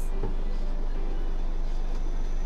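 Engine of a Toyota Coaster-based camper van heard from inside the cab, a steady low drone as the van pulls away, with a short low thump about a quarter second in.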